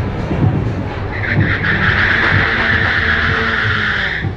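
Tyres of a SEAT León Cupra spinning and squealing in a burnout: a loud screech that starts about a second in, holds steady and cuts off sharply at the end, over the car's running engine.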